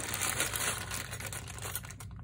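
A bag of costume jewelry, mostly brooches, being handled and rummaged: a continuous crinkling of the bag with many small clicks of the metal pieces knocking together.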